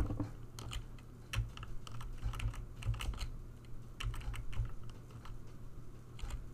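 Typing on a computer keyboard: irregular, fairly quick key clicks.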